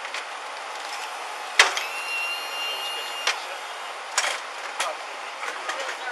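An ambulance stretcher being loaded into the back of an ambulance. A sharp clack is followed by a steady high tone for about a second and a half, which ends in another clack, and then a few lighter knocks.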